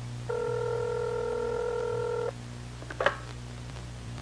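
A telephone ringback tone: one steady ring about two seconds long, then a short click about three seconds in.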